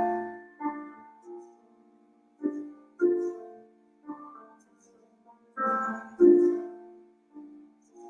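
Solo grand piano playing slow, widely spaced chords. Each chord is struck and left to ring and fade, with brief silences between them, and a louder pair of chords comes about two-thirds of the way through.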